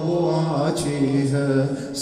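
A man's amplified voice chanting a Shia Muharram latmiya lament, holding long, slowly sliding notes.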